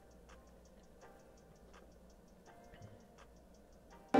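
Near silence, with faint, evenly spaced ticks about five a second from a beat playing back very quietly in music production software.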